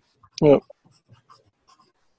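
A short spoken "yeah", followed by faint, scattered scratchy little sounds.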